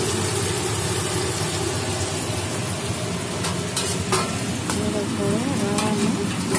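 Potato pieces frying in hot oil in a pot, a steady sizzle, with a few sharp clicks a little past halfway.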